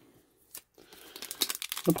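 Foil wrapper of a trading-card pack crinkling as it is handled, starting about a second in and growing louder, after a single light click near the middle. A man starts talking at the very end.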